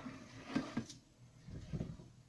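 Faint knocks and handling noise from a metal cookie sheet of baked shortbread being held and moved in an oven-mitted hand: two light clicks about half a second in, then a low rumbling scrape near the end.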